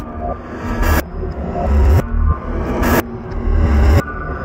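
Glitchy downtempo electronic music: a deep bass swell that builds and cuts off abruptly about once a second, with a hissing sweep every two seconds.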